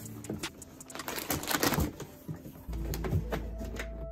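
Plastic mailer bag crinkling and cardboard shipping box being handled, a run of short rustling crackles. About two-thirds of the way in, background music with a steady low bass comes in.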